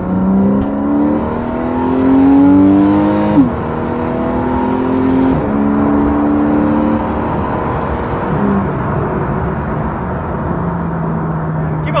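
Porsche 911 (991) Carrera 4's flat-six engine heard from inside the cabin, revving up hard under acceleration. It shifts up quickly about three and a half and five and a half seconds in, each shift a sudden drop in pitch. It then eases off and settles into a steady, lower drone as the car cruises.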